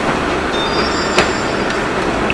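Steady background noise with a single sharp click about a second in, and a few faint high tones around the middle.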